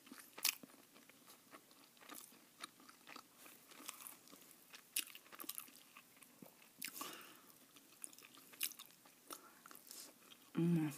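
Close-miked chewing of a burger topped with jalapeños: soft crunches and wet mouth clicks, quiet overall, with the sharpest click about half a second in.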